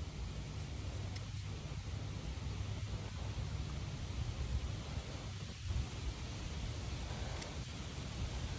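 Faint, steady outdoor ambience: low wind rumble on the microphone with a light rustle of leaves.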